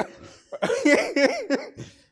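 Men laughing, a quick run of ha-ha pulses starting about half a second in and dying away near the end.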